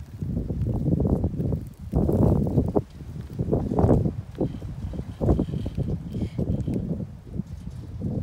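Wind buffeting the microphone: a low rumble that surges and drops in irregular gusts.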